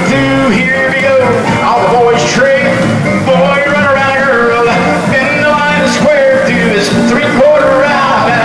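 Square dance singing call: male callers singing together into microphones over recorded backing music with guitar, heard through the hall's sound system.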